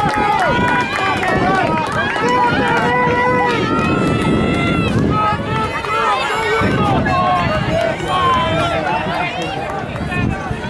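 Several spectators' voices at once, overlapping calls and shouts of encouragement for runners passing on a track.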